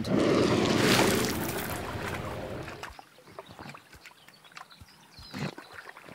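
An African elephant making a loud, rough low sound that fades away over about three seconds, followed by faint scattered clicks.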